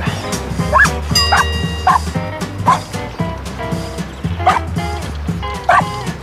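A dog barking in short, separate barks, about six of them at uneven gaps, recorded while the dog was asking for a ball. Background music with a steady low beat plays underneath.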